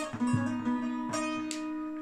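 Bağlama (long-necked Turkish saz) playing a short instrumental phrase of plucked notes, with a steady open-string drone ringing underneath.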